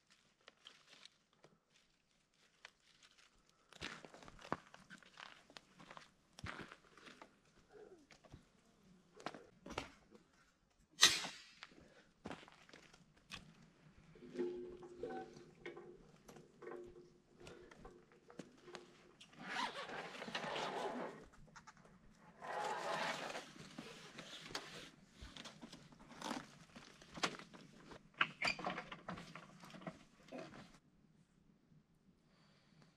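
Camping gear being handled during camp setup: scattered clicks and knocks, a sharp knock about eleven seconds in, and two longer bursts of rustling a few seconds apart near the end.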